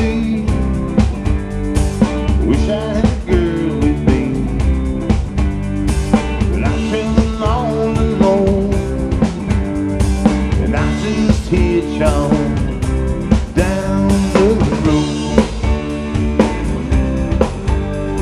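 Live rock band playing: electric guitars over a steady drum-kit beat, with notes bending up and down.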